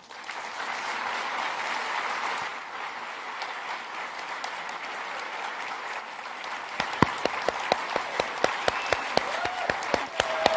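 Audience applauding in a theatre hall, a dense even patter of many hands. From about seven seconds in, sharper single claps stand out over it.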